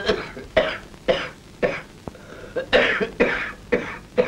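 An elderly man's repeated harsh coughing, about two coughs a second with a short pause midway: the coughing fit of a frail, ailing old man.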